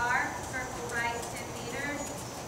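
A voice speaking several short phrases, over faint hoofbeats of a horse moving on the arena's sand footing.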